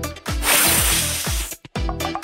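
A long airy hiss for a giant bubblegum bubble being blown up, over background music with a steady beat; everything cuts out abruptly about a second and a half in.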